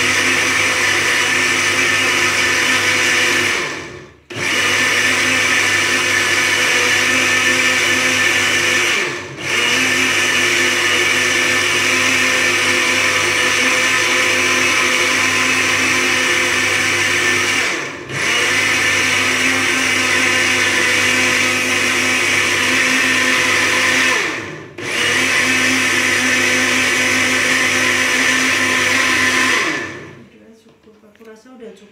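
Countertop jug blender running, blending soft berries with water into juice. The motor briefly drops out and restarts four times, then stops at the end.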